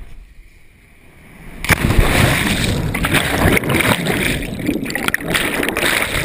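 Rush of air on a GoPro during a cliff-jump backflip, then a loud splash as it plunges into the water about a second and a half in, followed by steady underwater churning and bubbling.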